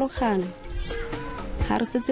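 A woman speaking in a language other than English, over background music.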